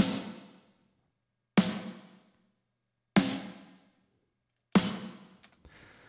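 Mix-processed snare drum track played back solo: four single hits about a second and a half apart, each a bright crack with a body and a tail that dies away over most of a second.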